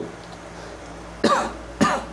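A person coughing twice near the end, two short coughs about half a second apart.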